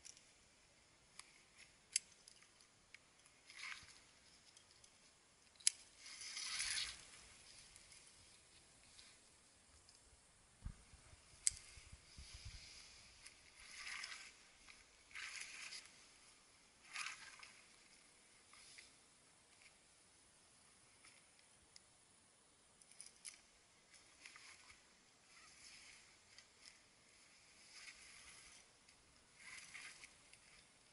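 Faint, intermittent rustling of climbing rope being pulled and wrapped around a tree trunk by hand, with a few sharp clicks.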